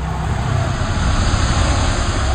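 A loud rushing sound effect: a deep, steady rumble under a wide hiss, laid under an edited title card.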